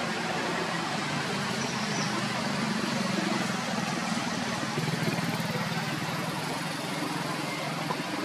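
Steady outdoor background noise: a continuous hiss with a low hum under it, like distant traffic, with no distinct animal calls.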